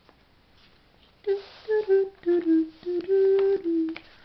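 A voice humming a short tune of about six held notes. It starts a little over a second in, with rustling and light clicks from magazine pages being turned.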